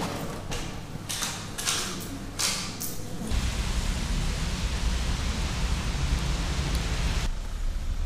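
A few short rustles and clicks of handling at a shop counter. About three seconds in, this gives way to a steady outdoor hiss with a heavy low rumble, typical of wind on the microphone, which cuts off abruptly about seven seconds in.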